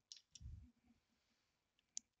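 Near silence, with a few faint clicks near the start and just before the end and a soft low thump about half a second in.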